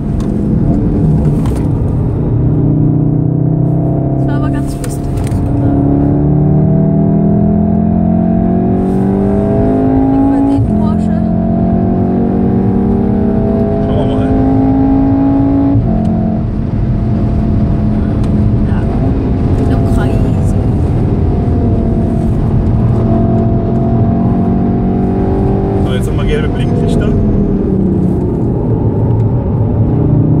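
2014 VW Golf VII R's turbocharged 2.0-litre four-cylinder heard from inside the cabin under hard acceleration. The pitch climbs through the gears, with upshifts about ten and sixteen seconds in, then evens out at high speed. Near the end the engine note changes as the car slows for a corner.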